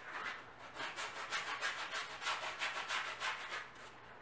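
Stiff paintbrush scrubbing acrylic paint onto a stretched canvas in quick back-and-forth strokes, about five a second, the bristles rasping on the weave.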